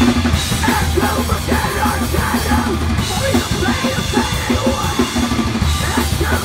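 Live rock band playing loud, with electric guitars, bass guitar and a drum kit.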